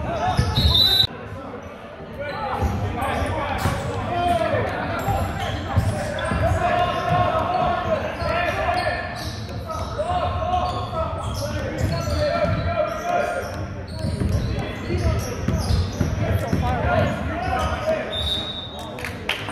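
Indoor basketball game: a ball bouncing and thudding on a hardwood court among players' footsteps, under a constant din of players and spectators shouting and chattering, echoing in a large gym.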